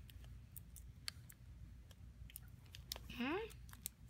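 Fingernail clippers snipping a pacifier's nipple away, a string of sharp irregular clicks. A short rising voice sound breaks in about three seconds in.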